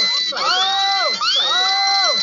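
A looped sound effect: the same rising, then held, pitched cry repeats about once a second, each one lasting under a second.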